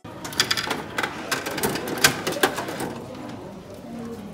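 Sharp clicks and rattles from a gacha capsule vending machine as coins are fed into its slot. The clicks come thick for about two and a half seconds, then thin out.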